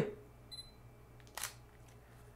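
Sony a6000 camera taking a photo: a short, high focus-confirmation beep about half a second in, then a single faint shutter click about a second later.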